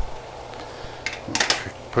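Brief rustle of a paper towel wiping a meat thermometer probe, about a second and a half in, over a low steady hum.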